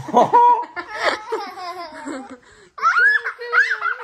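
A man and a small girl laughing together. From about three seconds in, the girl's high-pitched laughter comes in short, rising and falling bursts.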